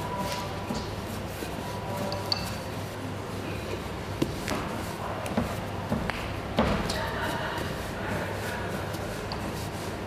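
Steady hum of a bakery workroom, with a few scattered light knocks and clatters, the sharpest about four and six and a half seconds in.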